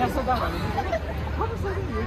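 Crowd babble: many people talking at once, overlapping voices with no single clear speaker.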